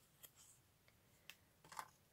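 Near silence with a few faint ticks and rustles from thin scored cardstock strips being handled and bent.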